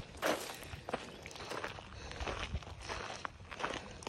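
Footsteps on a gravel path, an irregular walking rhythm of several steps a second.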